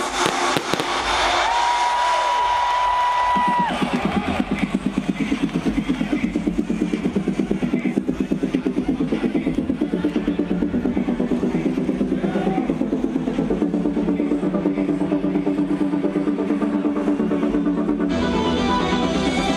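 Electronic dance music from a live DJ set over a festival sound system, heard from the crowd. A single synth note is held for about two seconds, then a fast pulsing synth pattern runs on with the bass thinned out.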